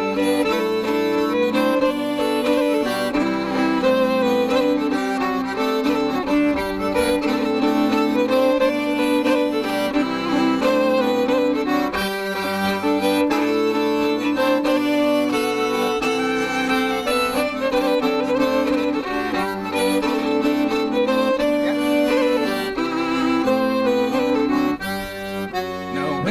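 Fiddle and melodeon (diatonic button accordion) playing an instrumental break between the sung verses of a folk song, the fiddle taking the tune over the melodeon's held chords.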